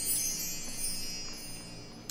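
A tinkling shimmer of wind-chime-like high notes, slowly fading away.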